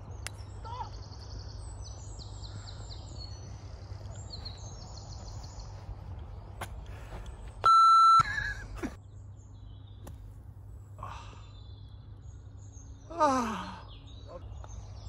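Birds singing in high trills over a steady low rumble of wind on the microphone. Just past halfway comes a short electronic beep, about half a second long and the loudest thing here, and near the end a loud pitched sound glides steeply down.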